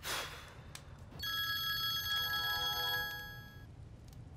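Smartphone ringtone: a steady electronic ring of several held tones lasting about two and a half seconds, starting just over a second in, announcing an incoming call. A short rush of noise comes right at the start.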